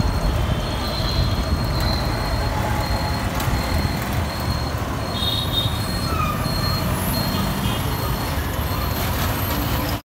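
Heavy city street traffic of motor scooters, motorbikes and auto-rickshaws: a steady, dense low engine rumble. Through it a short high-pitched beep repeats a little under twice a second, with a few brief horn-like tones.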